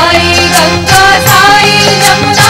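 Devotional bhajan music: voices singing a melody over instrumental accompaniment, with bright percussion strikes on a steady beat.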